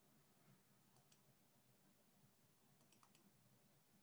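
Near silence: faint room hum with a few faint clicks, two about a second in and a quick run of four near three seconds.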